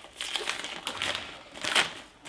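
A white plastic postal mailer bag crinkling and crackling in the hands as it is handled and opened, in irregular bursts, loudest near the end.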